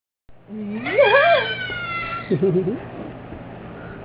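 A baby's vocalization: a squealing call that rises and falls in pitch, then a shorter wavering one about two and a half seconds in.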